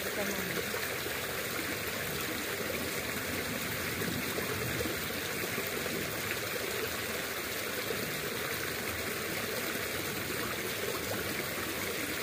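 Small muddy creek flowing steadily, a constant rush of running water.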